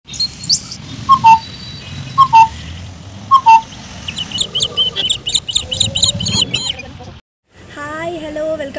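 Birdsong: one bird gives a loud two-note falling call three times, about a second apart, then a rapid run of high, thin chirps follows over a soft background hiss, cutting off suddenly near the end.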